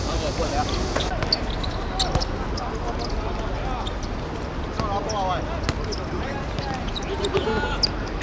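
A football being kicked and bouncing on artificial turf: several short, sharp knocks scattered through, with shouting voices in between.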